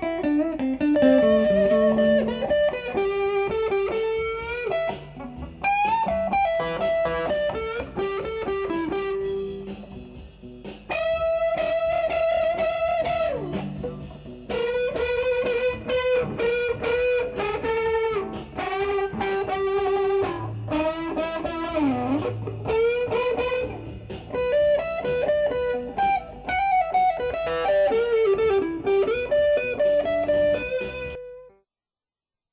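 Electric guitar with P90 pickups played through an amplifier: a run of single-note lead lines with several string bends, with a brief pause about a third of the way in.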